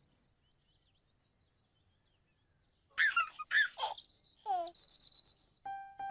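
About three seconds of near silence, then a baby giggling in short bursts, followed by a falling whistle-like glide and a fast high trill. Near the end, steady chime-like music notes begin.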